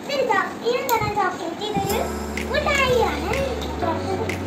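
A young girl talking in a high voice. A steady low hum comes in about halfway through.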